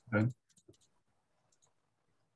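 A man says one short word, then a pause of near silence broken by a few faint, soft clicks.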